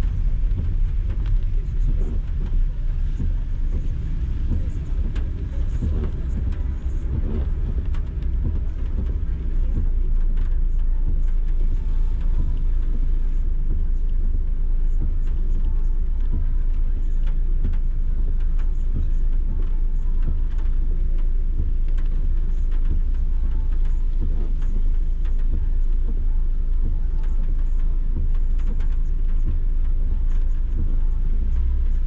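Low, steady rumble of a car's engine and road noise heard inside the cabin as the car crawls and idles in slow traffic; it grows a little louder about ten seconds in.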